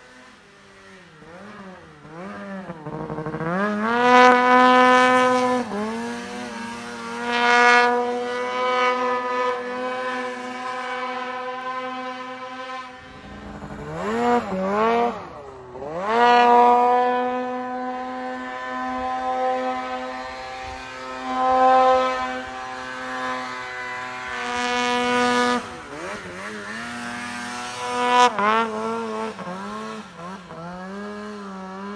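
Polaris snowmobile engine revving under hard throttle in deep powder. The pitch climbs and then holds level at full throttle for several seconds, drops away as the throttle eases, and climbs again, several times over.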